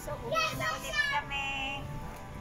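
Background music with a high, light singing voice sliding between notes, ending on a held note near the end.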